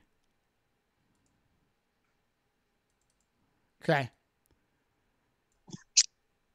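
Mostly near silence on a noise-gated call line, broken by one spoken "okay" a little before the end. Then a single short, sharp click right at the end.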